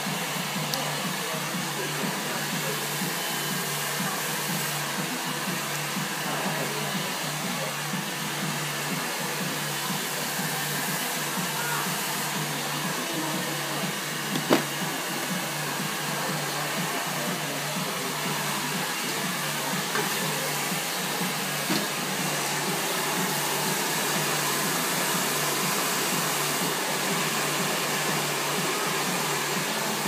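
Steady whoosh of a hair dryer running, with a single sharp click about halfway through.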